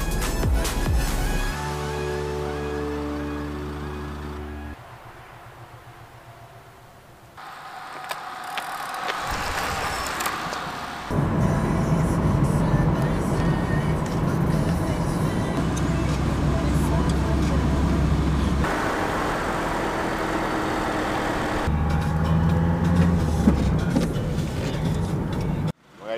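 Background music: a song of sustained chords whose sections change abruptly several times, with a quieter passage a few seconds in.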